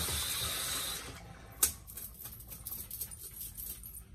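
Water running into a sink as a boar shaving brush is rinsed, stopping about a second in. A single sharp knock follows, then faint small ticks.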